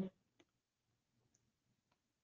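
Near silence, broken by two faint clicks, one about half a second in and one near the end.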